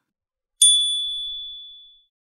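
A single high, clear ding sound effect, struck about half a second in and fading out over about a second and a half. It is a 'correct' or winner chime cueing a checkmark.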